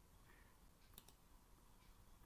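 Near silence: faint room tone with a faint computer mouse click about a second in.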